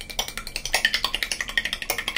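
Steel spoon beating raw eggs in a ceramic bowl: quick clinks of the spoon against the bowl, about ten a second.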